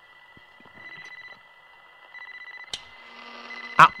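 A pause with a faint, steady, high-pitched electronic whine that drops out and comes back, and a single click near the end.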